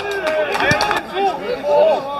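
Players' voices shouting on a football pitch, with a quick cluster of sharp knocks in the first second and a loud shout near the end.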